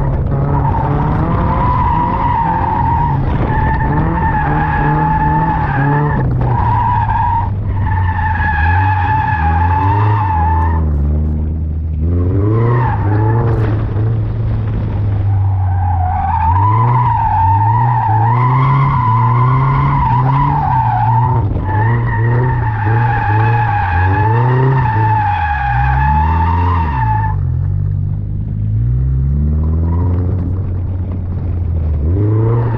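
Toyota GR86's engine revving up and down while its tyres squeal in long runs as the car drifts. The squeal drops out for about five seconds near the middle, leaving the engine alone, then comes back.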